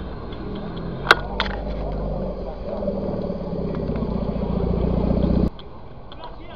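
A car engine running and growing steadily louder over several seconds, then cutting off suddenly near the end. A sharp metallic click rings out about a second in.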